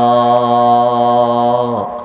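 A man's voice holding one long, steady chanted note in melodic Arabic recitation, amplified through a microphone. The note falls away and stops near the end.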